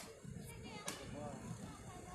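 A sharp tap as a player kicks a sepak takraw ball, then two more quick taps within the first second. Faint spectator chatter runs underneath.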